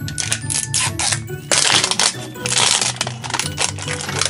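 Plastic wrapping of an L.O.L. Surprise ball crinkling and rustling as it is peeled off by hand, loudest about halfway through, over background music.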